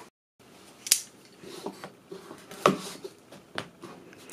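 Folding pocket knife cutting the seal on a cardboard box: light scraping with three sharp clicks, about a second in, past the middle and near the end.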